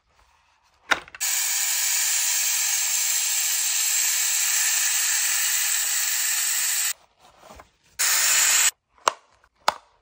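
Handheld steam cleaner jetting steam in a steady hiss for about six seconds, begun with a click, then a second, shorter blast. Two sharp plastic clicks follow near the end as the detergent drawer is handled and pushed into place.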